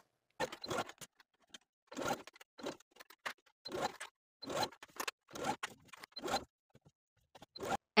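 Domestic sewing machine stitching a seam in short, choppy bursts, each cut off suddenly, with fabric handling between them.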